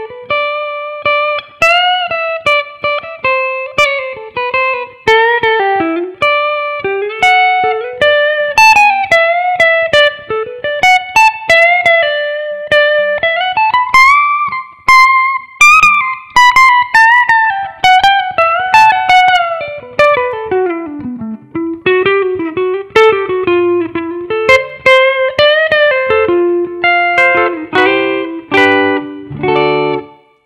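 PRS electric guitar playing a single-note lead solo: picked notes with bends and slides, a long slide down about two-thirds of the way through, then quicker, lower phrases near the end.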